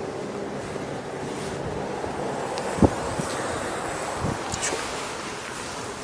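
Wind rushing steadily over the microphone while a car's tailgate is lifted open, with one short sharp knock about three seconds in and a softer one about a second later.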